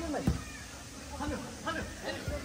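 Footballers shouting short calls to each other during play, the calls sliding up and down in pitch. A single thud of a football being kicked comes just after the start.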